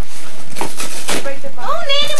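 Rustling and scraping of a large cardboard gift box being opened by hand, in several short irregular bursts. A voice comes in near the end.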